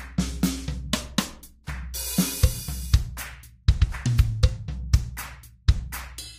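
Programmed drum beat from Logic Pro X's Drummer: a busy run of kick, snare and hi-hat hits with deep sustained low notes beneath and a cymbal wash about two seconds in. Its MIDI notes are being shifted by the Transposer effect, so the pattern's hits land on different kit pieces as the transpose amount is raised.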